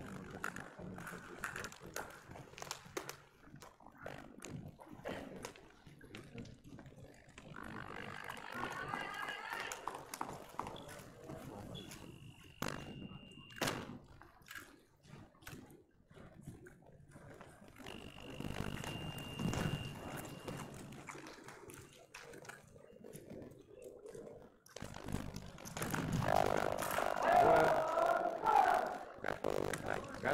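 Voices in a large sports hall, loudest near the end, with scattered clicks and knocks and two brief steady high beeps in the middle.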